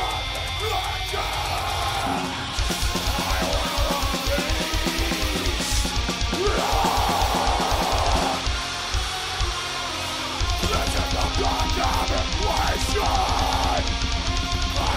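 Extreme metal band playing live: heavily distorted guitars over very fast bass-drum work, with a harsh screamed vocal. The band drops back briefly about eight seconds in and comes back in full about ten seconds in.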